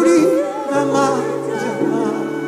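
Live gospel worship song: a voice singing with vibrato over held, sustained chords.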